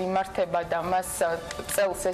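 Only speech: a woman talking quickly in Georgian.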